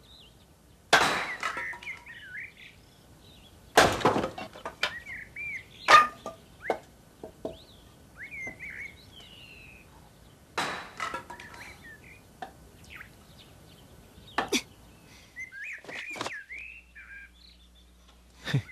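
Birds chirping in short, curling calls throughout, with about half a dozen sudden louder sounds in between, the loudest about one, four and six seconds in.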